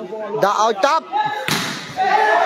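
A volleyball struck hard: one sharp smack about one and a half seconds in, with a short echoing tail in a large hall, amid a man's running commentary.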